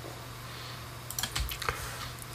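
A quick run of computer keyboard clicks, bunched a little past the middle, over quiet room tone.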